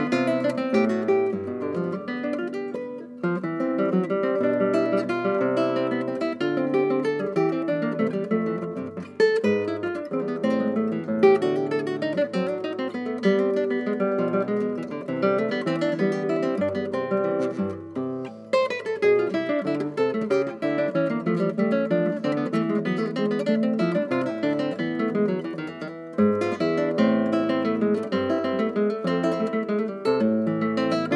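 Solo classical guitar played fingerstyle: a continuous passage of plucked notes, with brief breaths between phrases a few times.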